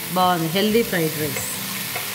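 Chicken fried rice with brown rice sizzling steadily in a pan as it is stirred and tossed with a spatula. A woman speaks briefly over it in the first second.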